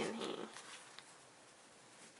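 A paper page of a handmade junk journal being turned, a soft papery rustle that fades within about half a second, followed by a faint tick about a second in.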